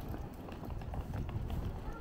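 Footsteps on a brick-paved street, about two steps a second, over a low rumble.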